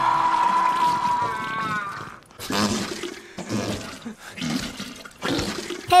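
A man's long, held cry that wavers and breaks off about two seconds in, followed by several seconds of gushing, splashing toilet-water sounds.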